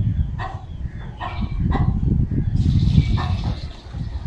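Four short animal calls spaced over a few seconds, above a steady low rumble.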